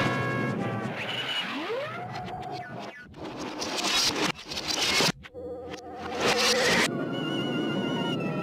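Cartoon music score with sound effects: a rising glide about a second and a half in, then loud crashing, noisy bursts from about three to seven seconds in, with the music returning near the end.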